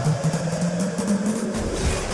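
Dramatic film background score: a low drone slowly rising in pitch over a dense, noisy texture, with the deep bass cutting out and then coming back in about a second and a half in.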